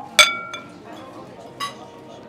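Tableware clinking: one sharp, ringing clink, a light tap just after it, and a second, softer clink over a second later.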